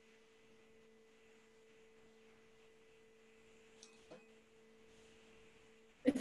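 Near silence: a faint steady hum on two low tones, with a faint tick about two-thirds of the way in.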